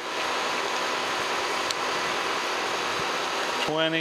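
Kearney & Trecker Model 3H horizontal milling machine running steadily, an even machine hum with faint steady tones, and one light tick about a second and a half in.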